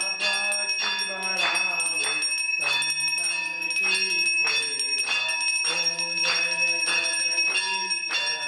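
Brass hand bell rung without a break during Hindu temple worship, a steady high ringing that carries through. A man's voice chants over it in short held phrases.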